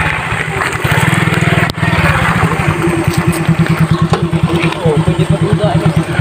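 A motorcycle engine idling close by, a rapid, even putter throughout, with one sharp click just under two seconds in.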